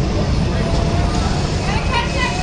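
Electric ride-on racing kart driving past close by: a thin motor whine, rising slightly, over a loud, steady low rumble. An announcer's voice comes in near the end.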